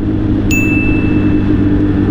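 Suzuki Hayabusa's inline-four engine running at a steady cruise, heard through a helmet microphone. About half a second in, a single bright ding sounds and rings on, slowly fading.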